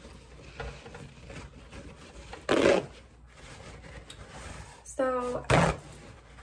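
Paper towel sheets torn off a roll: two short, loud rips about three seconds apart, with soft handling rustle between.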